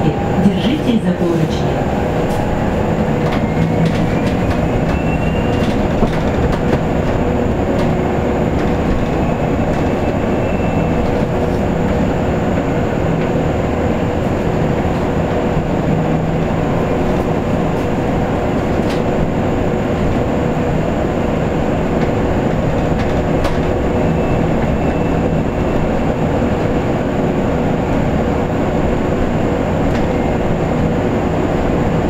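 Cabin noise inside a KAMAZ-6282 electric bus driving at speed: a steady rumble of tyres on the road with steady whining tones from the electric drive, and a faint rising whine a few seconds in.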